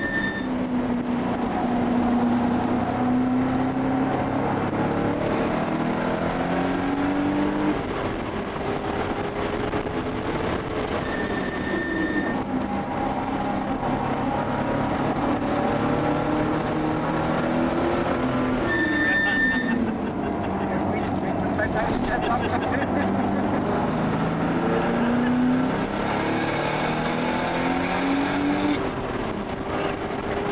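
Inside the cabin of a 1979 Porsche 930 Turbo, its air-cooled turbocharged flat-six is driven hard on track. The engine note climbs again and again as it revs through the gears, and drops sharply about eleven seconds in and again near the twentieth second as the driver lifts and shifts down.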